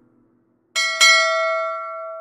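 A bell-like chime sound effect: two quick dings about a quarter second apart, beginning near the middle, ringing on and fading out.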